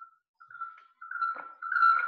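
A single steady high-pitched whine that starts faint and grows much louder through the second half.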